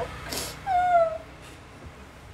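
A woman's voice: a short breath or puff, then a brief high hum with a slight slide in pitch, about half a second long, before low room tone.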